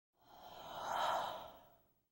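A single whoosh sound effect for an intro title, swelling to a peak about a second in and fading away.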